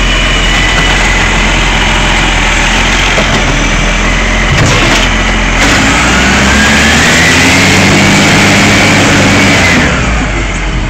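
Side-loader garbage truck's diesel engine running under load with a steady high hydraulic whine as the automatic arm works the bin, and a knock about five seconds in as the bin is set back down. Near the end the engine and whine rise in pitch as the truck pulls away.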